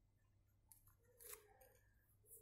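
Very faint scratching of a pen writing on paper: a few short strokes, the loudest about a second in.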